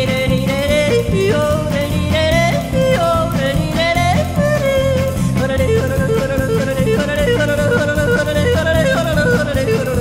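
A woman yodelling, her voice flipping quickly up and down in pitch around a held melody. A country band plays beneath her, with electric bass, guitar and drums keeping a steady beat.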